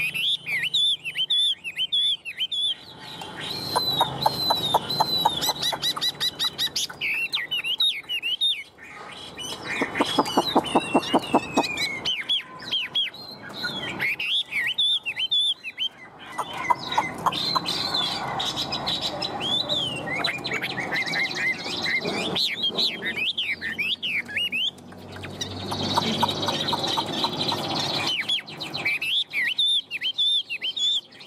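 A caged Chinese hwamei (Garrulax canorus) singing loudly and continuously: a long run of fast, varied warbled phrases and whistles, including one long falling whistle. The song is broken several times by bursts of rapid, lower rattling notes.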